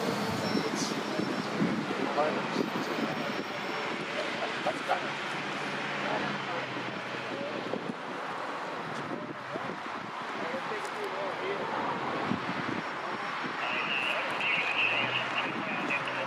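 Indistinct voices of people talking, over the steady noise of road traffic. A high-pitched sound comes in near the end.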